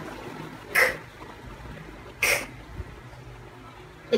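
A voice making the /k/ letter sound twice, two short breathy 'kuh' bursts about a second and a half apart, as a phonics sound for the letter k.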